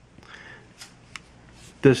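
Soft handling noise as a Glock-pattern pistol is turned over in the hand: a brief rustle, then two faint clicks.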